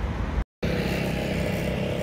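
A low rumble inside a moving lift, broken by a brief gap of silence about half a second in. Then steady street traffic with an engine hum.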